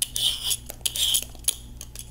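Dual-blade vegetable peeler scraping down the thick skin of a butternut squash in two short strokes, with a few sharp clicks in between.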